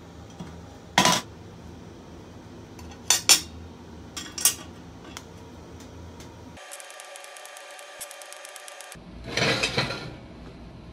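TIG tack-welding a small sheet-steel box on a steel welding table: a few short, sharp metallic clinks, then a steady buzz for about two seconds past the middle, then a brief noisy burst near the end.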